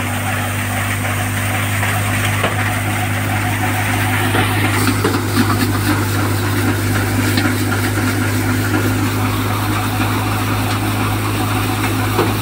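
Tractor-driven crop thresher running steadily: a constant low engine drone with a noisy rattle of dry plants going through the machine above it.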